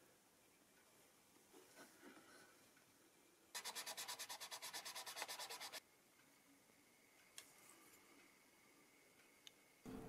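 A small black graphite-composite (TUSQ) saddle insert is rubbed rapidly back and forth on sandpaper while being sanded down to a snug fit, at about ten short strokes a second for about two seconds. This comes about three and a half seconds in; the rest is near silence.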